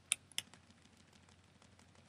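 Two sharp clicks from computer input, about a tenth and four tenths of a second in, followed by a few faint ticks in a quiet room.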